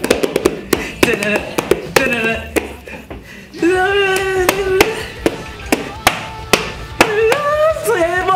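Sharp, irregular slaps and taps of hands and a paper booklet drumming along, several a second, over a rock song with sung vocals.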